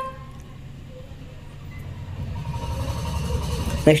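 A low rumble that builds steadily louder over a few seconds, after a held tone with overtones that ends just after the start.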